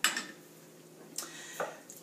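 Light kitchen clinks and knocks: a serving spoon and a dressing bottle handled against a mixing bowl and countertop. There is one sharp click at the start and two more short knocks a little after a second in.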